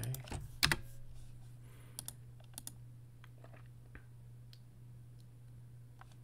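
Computer keyboard typing: scattered short key clicks, a few close together in the first second and more spread out after, over a steady low hum.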